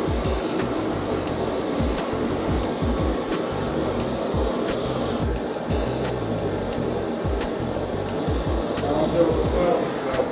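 Two portable gas-canister torches burning with a steady hiss, their flames heating the neck of a glass bottle until the glass softens and glows. Background music with a beat plays under it.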